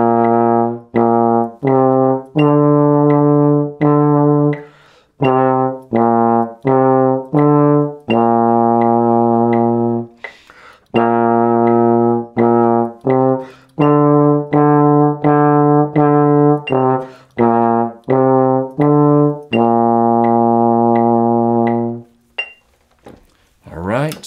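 Trombone playing a slow tongued exercise melody on the low notes B-flat, C and D, mixing short notes with long held ones. The playing stops about two seconds before the end.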